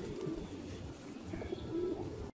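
Feral pigeons cooing quietly, with a low coo near the start and another near the end.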